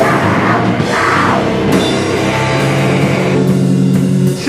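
Hardcore punk band playing live and loud: distorted electric guitar, bass and drum kit with cymbal crashes. About two seconds in, the full-band playing gives way to a held chord that rings out steadily.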